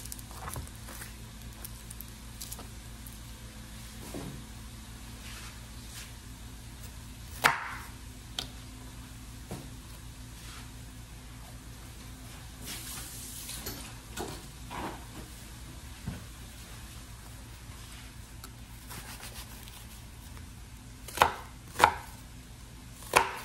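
Chef's knife cutting through an onion onto a wooden cutting board: two sharp strokes close together near the end. Before that, a few scattered light knocks on the board over a steady faint hiss and hum.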